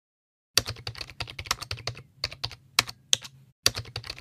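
Typing on a computer keyboard: a quick, uneven run of key clicks starting about half a second in, with a short pause near the end.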